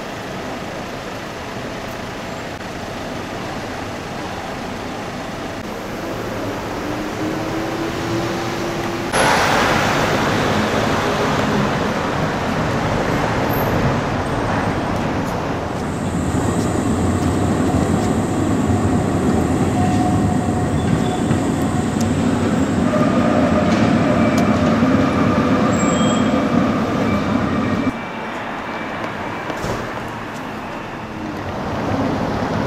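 City street traffic noise that jumps louder about a third of the way in. In the second half an electric tram goes by, its steady whine and thin squealing tones running for about ten seconds before the sound cuts off abruptly near the end.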